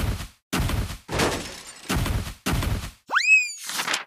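Edited sound effects of notebooks being thrown onto a wooden floor: a run of four or five short, clattering, flapping bursts, each cut off sharply. About three seconds in comes a cartoon boing that swoops up sharply in pitch.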